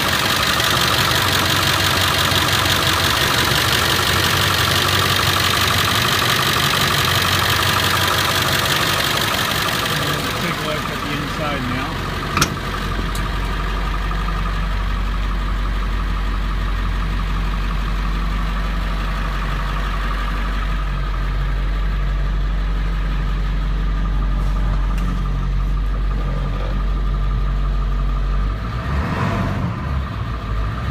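Heavy diesel truck engine idling steadily at about 1,000 rpm. It is close and bright for the first ten seconds or so. After a sharp click about twelve seconds in, it turns duller with a strong low drone.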